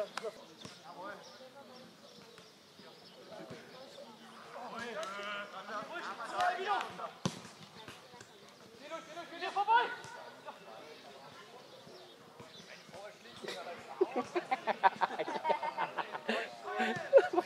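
Football match sounds: distant players shouting, a sharp thud of a football being kicked about seven seconds in, and a quick run of knocks near the end.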